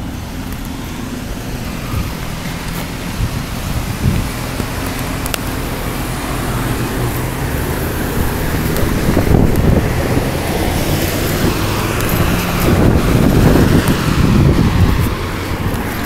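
Road traffic at a city intersection: car engines running and cars passing, with a steady rumble that swells louder in the second half as vehicles come close.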